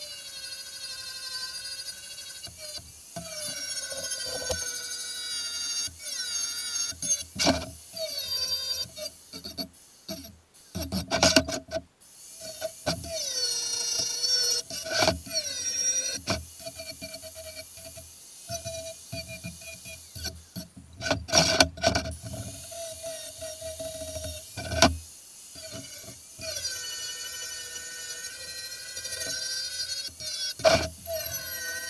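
Electric angle grinder grinding down the welds of a square-tube steel frame: a steady motor whine that sags in pitch as the disc bites into the metal and climbs again as it eases off, with a couple of short breaks.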